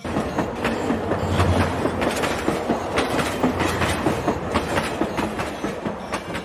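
Passenger train running, its wheels clattering over rail joints under a steady rumble, heard from aboard the carriage.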